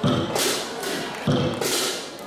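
Lion dance percussion playing a slow, sparse beat: a deep drum and gong stroke at the start and another about a second and a quarter in, each joined by a cymbal crash.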